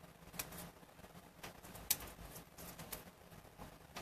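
Light, scattered clicks and taps of a paper piercing tool and fingers handling paper while glue dots are picked off their backing and pressed down, with one sharper click about two seconds in.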